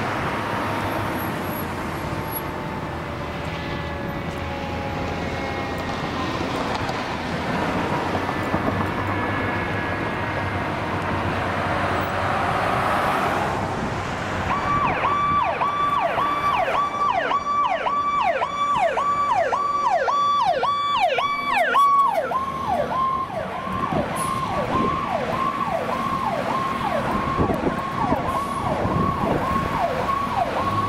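Seagrave Aerialscope tower ladder fire truck running its siren over road traffic: a slow rising and falling wail at first, switching about halfway through to a fast yelp of about three falling sweeps a second, which grows fainter toward the end.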